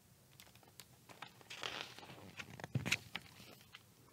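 A page of a large picture book being turned by hand: a few faint clicks and a papery rustle, loudest about three seconds in.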